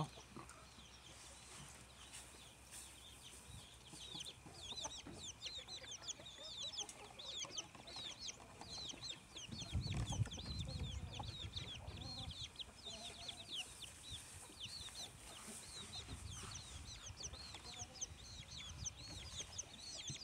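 Faint chicken sounds: many short, high chirps keep up throughout, with some clucking. A brief low rumble comes about halfway through.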